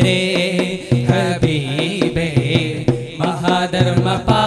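A group of voices singing a Malayalam Islamic devotional song together, over a steady beat of sharp taps.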